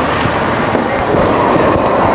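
Loud, steady rumbling and rustling noise on the camera's microphone, from handling and movement as the camera is carried into the vehicle's back seat.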